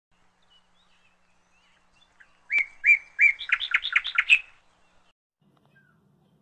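A bird singing: three short, clear, steady whistled notes, then a quick run of notes rising and falling. The song starts about two and a half seconds in and lasts about two seconds, with faint chirps before it.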